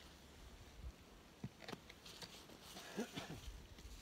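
Faint, scattered soft knocks and rustles of a person moving about on snow-covered ground and handling hive equipment, with a couple of short squeaks about three seconds in.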